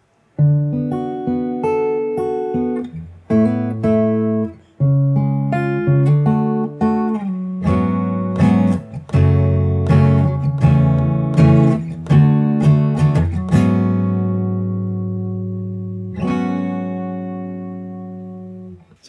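Steel-string acoustic guitar played fingerstyle: a chord progression picked note by note, turning to strummed chords about halfway through. It ends on a long ringing chord and a second chord struck near the end.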